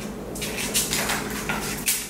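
Paper cupcake liners rustling and a metal muffin tin clicking as balls of cookie dough are rolled and pressed into the cups, a string of short sharp clicks over a faint steady hum.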